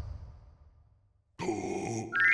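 The tail of an earlier crash fades into a short silence. About one and a half seconds in, a cartoon character gives a low grunt that starts suddenly.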